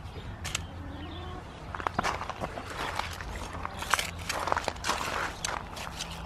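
Metal hand trowel digging into heavy, wet, stony soil, with several irregular scrapes and crunches of the blade against earth and stones.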